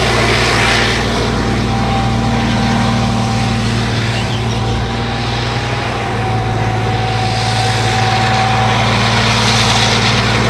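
Main battle tank driving over dusty ground, its heavy engine running steadily with a thin steady whine above it.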